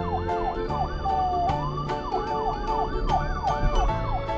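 Police siren sound in a fast yelp, its pitch sweeping up and down about three times a second, over background music with a steady beat.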